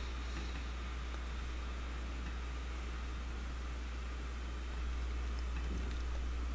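Room tone: a steady low hum and faint hiss, with no distinct sound.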